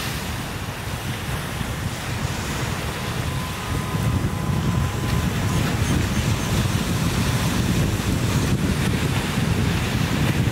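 Small ocean surf washing in at the shoreline, with wind buffeting the microphone; it gets louder about four seconds in.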